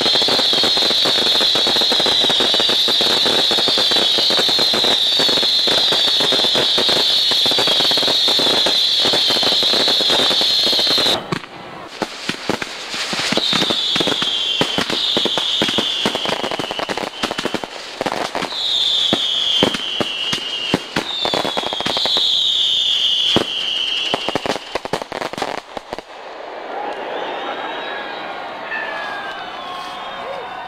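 Fireworks going off: for about the first eleven seconds a dense, continuous crackling barrage with a steady high whistle over it. Then comes a run of separate shell bangs with several falling whistles, and the display dies away about four seconds before the end.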